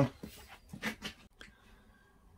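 A few faint short clicks and knocks, among them a light switch being flicked on, with a short soft vocal sound about a second in.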